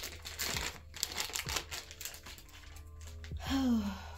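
Parcel packaging crinkling and rustling as it is handled and opened, a run of crackles mostly in the first second or so.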